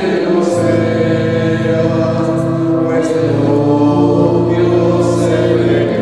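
Choir singing a hymn in long held chords that change every second or two.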